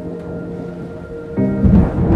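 Intro theme music holding sustained tones, then a sudden loud low thunder rumble with rain, about a second and a half in.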